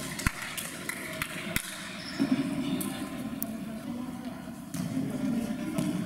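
A futsal ball being kicked on an indoor court: about three sharp thuds in the first two seconds, in a large sports hall, over the shouts and chatter of players and spectators.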